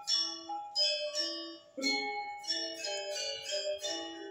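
Gamelan-style music of struck metallophones: a quick, steady run of ringing metallic notes, with a deeper stroke about two seconds in.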